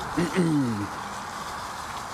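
A man's short wordless vocal sound, falling in pitch, about a quarter of a second in, followed by a steady rushing noise of air and rolling while riding an electric unicycle.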